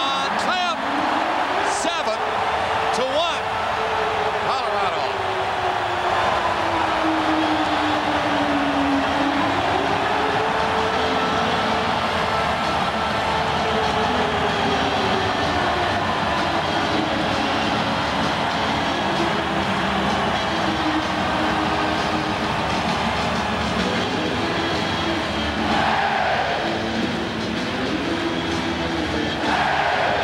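Arena crowd cheering and roaring steadily after a home goal, with a pitched tone gliding slowly up and down over it that turns into a tune of stepped notes in the second half.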